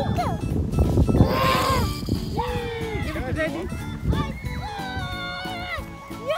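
Children's high-pitched wordless squeals and cries over background music.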